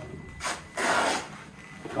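Cardboard packaging rubbing and scraping as a cardboard insert is handled: a short scrape about half a second in, then a longer one just after.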